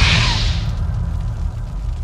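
Decaying tail of a cinematic logo sound effect: the hiss of an explosion-like boom fades over the first half-second, leaving a low rumble that cuts off suddenly at the very end.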